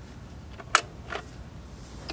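Stylus on a vinyl record giving a few sharp clicks and pops of surface noise over a low steady rumble, the loudest click about three-quarters of a second in.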